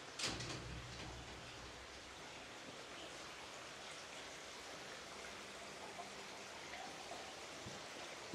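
Steady, faint trickle and splash of water from a courtyard water fountain. A short thump sounds just after the start.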